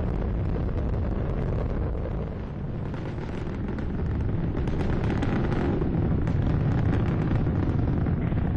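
Space Shuttle launch noise during ascent, from the solid rocket boosters and three main engines burning: a dense, steady rumbling noise with crackling in it. It dips briefly about two and a half seconds in.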